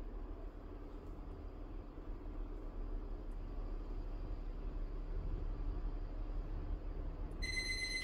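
A steady low hum fills the room. Near the end a phone timer alarm sounds: a short, clear electronic tone with overtones, lasting under a second, signalling the end of the timed stretch.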